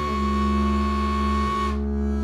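Bowed upright bass holding a low note under a diatonic harmonica's long held high note. The harmonica note stops near the end while the bass sounds on.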